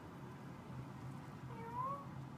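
Domestic cat giving one short meow that rises in pitch, near the end.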